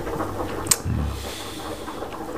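Quiet room tone with a low steady hum and a single sharp click about two-thirds of a second in.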